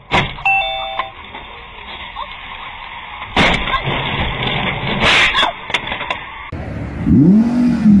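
Dashcam audio of a car crash: a sharp impact right at the start, a few brief electronic beeps, and further loud impacts about three and a half and five seconds in over road noise. After a sudden cut, an Audi R8's engine revs, its pitch rising and falling, near the end.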